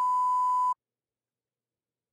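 A steady, high-pitched electronic bleep tone, the kind used to censor, that cuts off suddenly under a second in.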